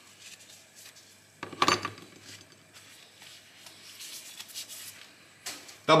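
A steel knife blade and small metal knife parts being wiped with a cloth and handled: soft rubbing with light metallic clinks, and one louder clatter about a second and a half in.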